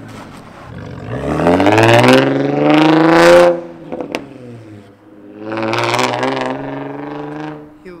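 Infiniti G35 coupe's V6 engine accelerating hard as the car pulls away from the curb, its pitch rising over a couple of seconds, then a second, steadier pull after a short drop.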